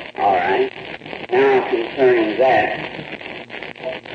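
Only speech: a man preaching, on an old recording with a steady background hiss.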